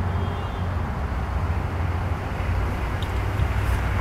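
Steady low rumble of motor-vehicle noise, as from traffic or an idling engine.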